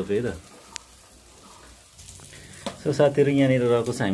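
Faint sizzling of chicken cooking in a covered aluminium pot, heard in a quiet stretch between bouts of talking; a single short click comes just under a second in. A voice talking is the loudest sound, at the start and again from a little before three seconds in.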